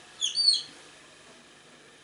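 Marker pen squeaking on a whiteboard: a quick run of short, high squeaks in the first half-second as letters are written.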